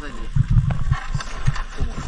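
People talking in the background while low, dull thumps come at irregular moments, a cluster about half a second in and more near the end.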